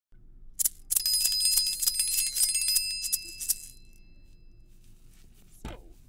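A small bell rung rapidly: one strike, then about two and a half seconds of fast, rattling ringing that fades out. It is a Foley stand-in for a school bell.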